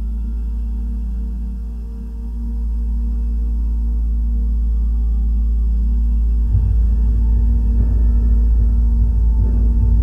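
Dark ambient film-score drone: a deep, sustained low hum with held tones above it, no melody. It dips briefly, then swells, and a rough low layer joins it about six and a half seconds in.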